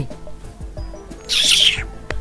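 Soft background music of a film soundtrack, with a short breathy hiss about halfway through.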